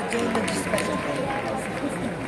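Indistinct voices of an audience talking and calling out over one another, with no single clear speaker.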